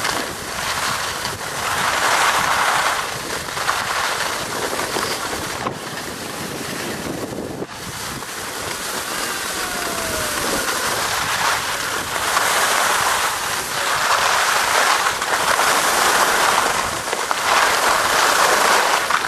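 Wind rushing over the microphone while edges scrape on packed snow during a descent of a groomed ski run. The noise swells and fades every few seconds with the turns.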